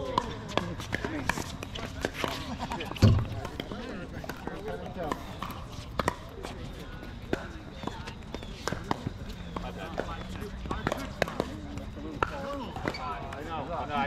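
Pickleball paddles hitting a plastic ball: sharp, irregular pops from this court and the neighbouring courts, with a louder knock about three seconds in.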